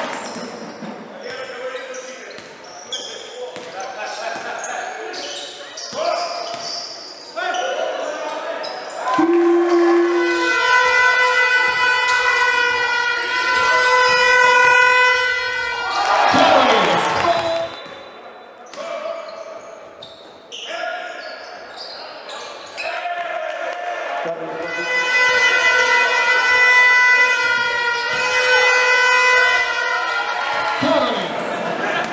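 Basketball game sound in an indoor hall: a ball bouncing on the hardwood court. Twice, a steady horn-like pitched tone is held for several seconds.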